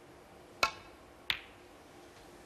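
A snooker shot: two sharp clicks about 0.7 s apart, the cue tip striking the cue ball and then the cue ball hitting a red, which is potted to bring the break to 62.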